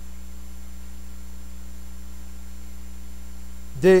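Steady electrical mains hum: a low, even drone with fainter higher tones above it. A man's voice begins just before the end.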